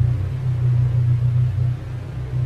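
A loud, steady low rumble with a fine rapid pulse, under a wide hiss. It sets in abruptly and dips slightly near the end.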